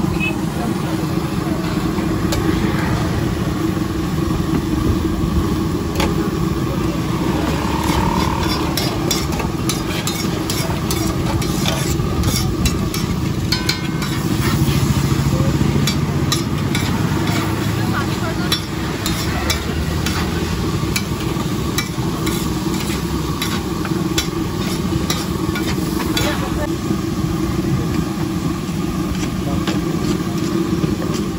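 Onions and tomatoes sizzling on a large flat griddle, with a metal spatula repeatedly scraping and clicking against the griddle surface.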